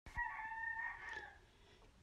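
A bird calling faintly: one long pitched call lasting a little over a second, falling away at its end.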